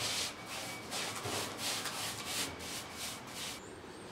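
A four-inch paintbrush scrubbed back and forth over rough, absorbent render as stabilising solution is brushed on: short rubbing strokes, about three a second, fading out near the end.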